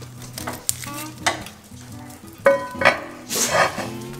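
Metal tongs raking burning wood and coals under an iron trivet, with several sharp metallic clanks, the loudest about two and a half seconds in and ringing briefly, then a scraping rush near the end as a cast iron skillet is set on the trivet. Soft background music runs underneath.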